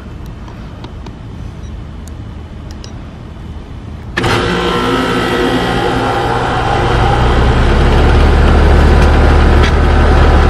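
A 5-ton air conditioner condensing unit's compressor kicks on about four seconds in and starts right up, helped by the potential relay and start capacitor of the hard start kit now wired in. It settles into a steady running hum, whose low drone grows louder a few seconds later.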